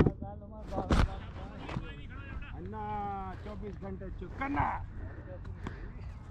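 Indistinct voices of several people talking, with a sharp knock right at the start and another about a second in.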